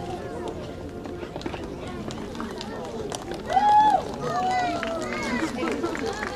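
Voices of people milling about, untranscribed and off-mic, with one loud drawn-out call about three and a half seconds in.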